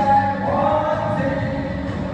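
Music with several voices singing together in long, held notes.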